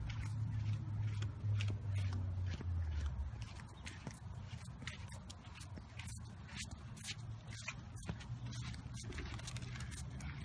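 Footsteps walking along a sidewalk: a string of irregular short steps and scuffs. Under them a low vehicle hum fades out about three seconds in.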